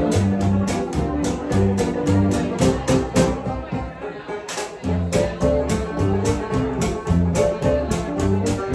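Live band playing an instrumental passage: an upright bass plucks low notes under a quick, steady drum beat of about four strokes a second. The drums drop out for about a second near the middle, then come back in hard.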